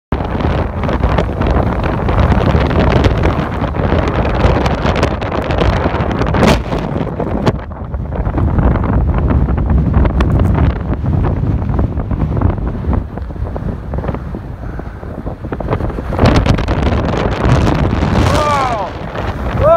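Strong mountain wind buffeting the phone's microphone, a loud, rumbling noise that surges and eases in gusts, dipping briefly about seven seconds in and again near fifteen seconds.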